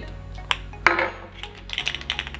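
A metal offset box wrench knocking on a tabletop as it is set down: a light click about half a second in, then a louder metallic clink just before a second in, followed by a few quick small ticks near the end. Faint background music runs underneath.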